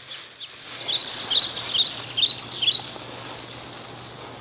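A bird chirping: a quick run of short, high, down-slurred notes lasting about two and a half seconds.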